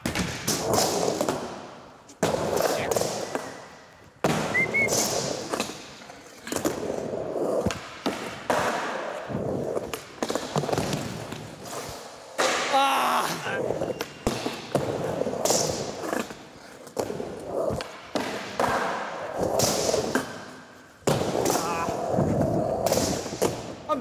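Skateboard riding on wooden ramps: the steady rumble of its wheels rolling, broken every few seconds by a sharp thud or clack as the board lands or strikes the ramp, each hit fading back into the roll.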